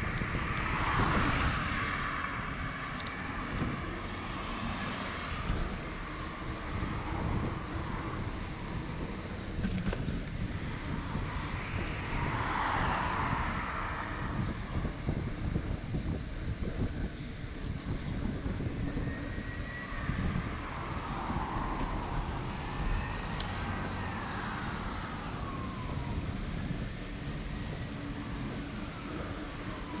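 Wind noise on the microphone of a moving bicycle, with cars passing on the road alongside, swelling and fading about a second in, around twelve seconds in and again around twenty-one seconds in. A few faint falling whines come in the latter half.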